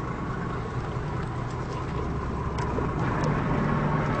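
Engines of a Luhrs 34 Convertible sport-fishing boat idling steadily at low speed as it comes into its slip.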